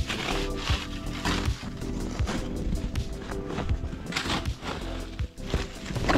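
Background music over repeated scrapes and swishes of a wide scoop snow shovel pushing through heavy, wet snow, one stroke every second or two.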